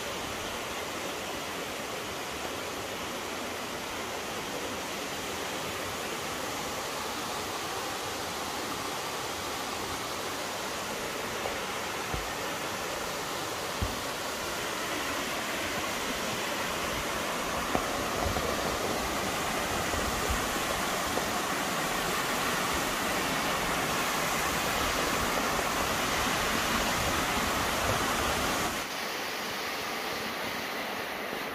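Mountain stream rushing over boulders: a steady wash of water noise that grows a little louder in the second half and drops back near the end, with a few soft low thumps.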